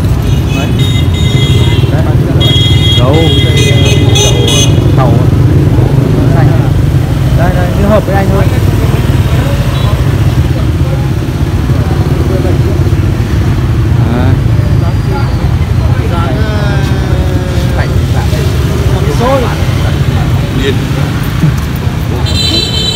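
Street traffic with motorbike engines running as a steady low rumble. A vehicle horn honks twice in the first five seconds, and people talk in the background.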